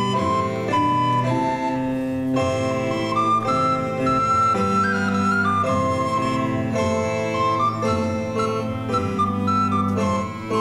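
Live early-music ensemble playing a Renaissance dance tune: a flute-like wind instrument carries the melody over sustained bowed bass strings from a viol, the notes held and moving step by step.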